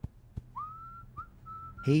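A person whistling a few notes: a short note sliding upward about half a second in, then several short notes held at much the same pitch.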